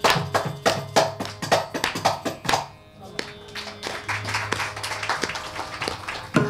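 Kanjira, a small South Indian frame drum with a jingle, played in rapid strokes in Carnatic percussion accompaniment. A little under three seconds in, the dense strokes stop and give way to softer, sparser strokes over a steady drone.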